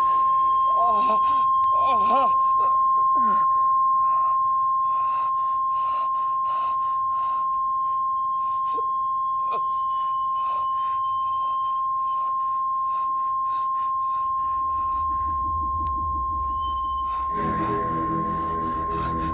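A piercing, steady high-pitched electronic tone, a drama sound effect of a noise that pains the listener, with a regular pulsing about twice a second under it. A man cries out in anguish in the first few seconds, and a deep rumble swells in near the end.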